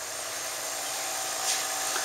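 Steady hissing background noise with a faint hum, and a brief soft rustle about one and a half seconds in.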